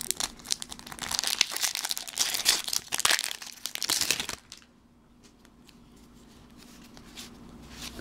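Foil booster-pack wrapper of Pokémon trading cards crinkling and tearing as it is opened by hand. The crinkling stops about four and a half seconds in, leaving a few faint ticks.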